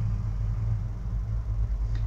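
A steady low background hum, with no other sound standing out.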